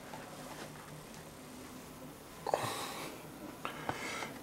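Quiet room tone with a faint hum, a short breath near the microphone about two and a half seconds in, and a couple of faint clicks near the end.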